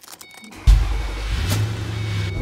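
Car key clicking in the ignition with the keyring jingling, then the car's engine starts suddenly about two-thirds of a second in and runs on as a steady low rumble.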